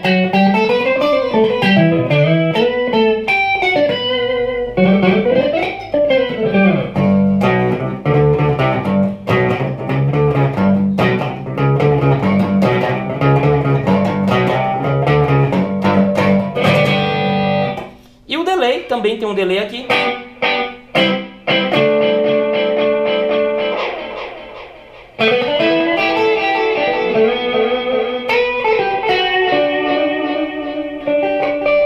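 Electric guitar played through a Boss ME-70 multi-effects unit with its modulation section switched on. It opens with sliding, bending lines, moves into a repeated low-note riff, and near the end lets a few notes ring out.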